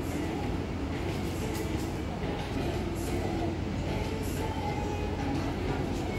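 Steady clothing-store ambience: a continuous low rumble with faint background voices of other shoppers.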